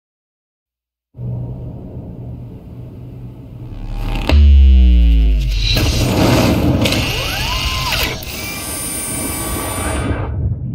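Cinematic soundtrack of music and sound effects. A low rumble starts about a second in, and a loud deep boom with a downward-sliding sweep comes about four seconds in. A dense, noisy wash carrying a few gliding tones follows.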